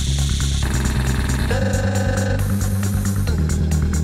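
Techno from a continuous DJ mix: a steady electronic beat over heavy bass, with synth parts that shift every second or so.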